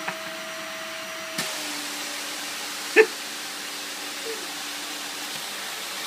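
Small vacuum cleaner running steadily with a whine and airy hiss. About a second and a half in, its tone drops in pitch and the hiss grows as the nozzle works against a cloth doll. A single brief, loud, pitched squeak about three seconds in.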